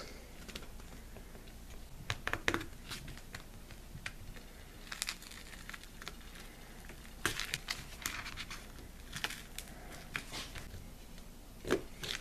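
Excess cured silicone rubber being peeled and torn away from the base of a mold by hand, in several short spells of ripping and rustling a second or two apart.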